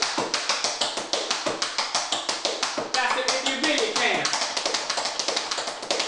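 Tap shoes on a wooden floor dancing the scuffle-dig-toe step at a fast tempo: a rapid, even run of metal taps, several strikes a second, repeating without a break.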